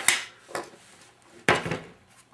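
Tools and parts being handled and set down on a tabletop: three knocks and clunks, the loudest about a second and a half in.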